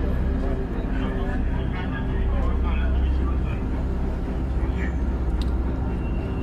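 Outdoor city ambience: a steady low rumble of traffic under indistinct voices talking.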